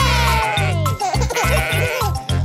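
A cartoon sheep's bleat, one wavering "baa" that falls in pitch over about a second, over bouncy children's-song backing music with a steady beat.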